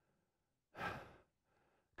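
A man's single sigh, breathed out into a headset microphone about three quarters of a second in, acting out the relief of lying down on a big bed; otherwise near silence.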